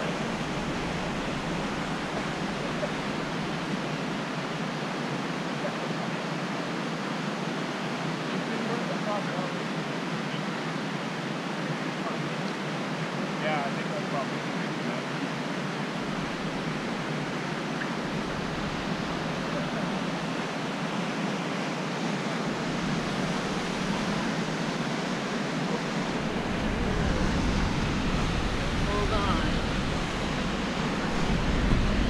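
Steady rushing of white water in the creek below the bridge. Gusts of wind buffet the microphone now and then in the second half, most strongly near the end.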